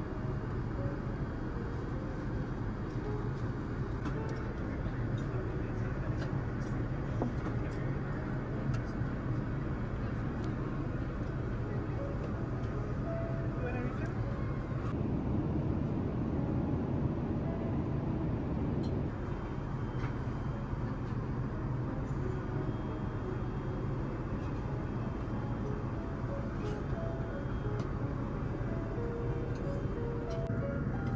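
Steady low drone of an Airbus A380's cabin in flight, briefly a little louder about halfway through, with short music-like notes and occasional light clicks over it.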